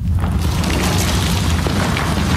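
A loud, steady deep rumble with a rushing hiss over it, a dramatic boom-like sound effect played through the sanctuary's speakers.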